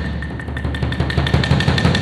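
Solo percussion: a very fast, dense stream of stick strokes on wooden woodblocks and drums (tom-toms, bass drum), the drums ringing on underneath. The playing swells slightly near the end.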